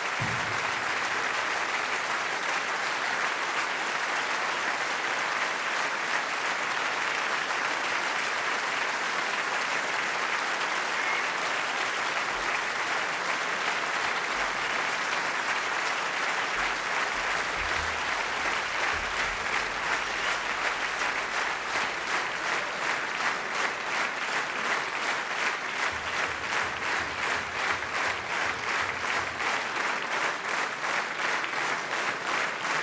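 Concert audience applauding; about twenty seconds in, the clapping turns rhythmic as the crowd falls into clapping in unison.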